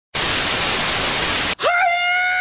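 TV static hiss, loud and even, cutting off abruptly after about a second and a half. Right after it a steady, high pitched note begins and holds.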